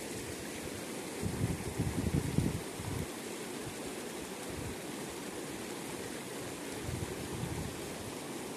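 Shallow mountain stream rushing steadily over stones. Low rumbles break in for a couple of seconds about a second in, and more faintly near the end.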